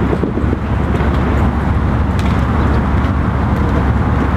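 Nitromethane-burning drag-racing engine running loud and steady, a dense rough engine note with no pause.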